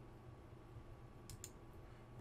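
Two short, sharp computer mouse clicks in quick succession about a second and a half in, over a faint room hum.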